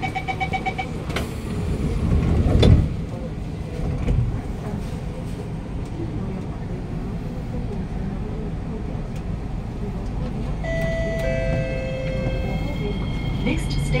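Metro train door-closing chime, a rapid beeping in the first second, then the doors shutting with a knock about three seconds in. The KSF C151A train then pulls away, with a low rumble and, near the end, steady electric tones from the traction equipment as it gathers speed.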